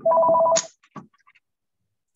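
Electronic telephone ring: a rapid trill of two steady tones lasting about half a second, followed by a faint click.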